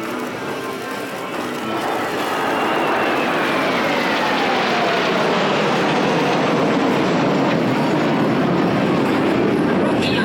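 Kawasaki T-4 jet trainers flying past: jet engine noise builds about two seconds in and stays loud, with a whine that falls steadily in pitch as they go by.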